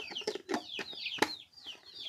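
Chicks peeping steadily, a quick run of short, high, falling peeps several times a second. Over them come plastic clicks and rattles from a lollipop jar being handled, with one sharp click just past a second in.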